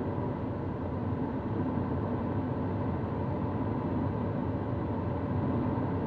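Steady rush of airflow around an Antares sailplane in flight, heard inside the cockpit as an even, low rumble.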